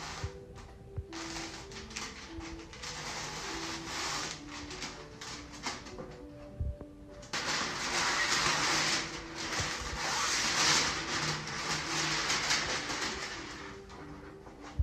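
Rustling and crinkling of a large plastic window-film sheet being handled, loudest from about halfway through until shortly before the end, over quiet background music with a simple melody.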